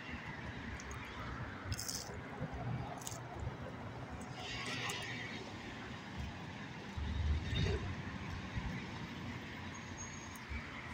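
Handling noises from food and a foam takeout box over a steady low background rumble: a few small clicks, a brief rustle or crunch about halfway, and a dull thump about seven seconds in, the loudest sound.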